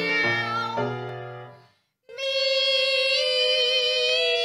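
Two female classical singers in a duet with piano accompaniment. A sung phrase over piano chords dies away into a brief silence a little before halfway. Then a long, high, held note begins and is sustained to the end.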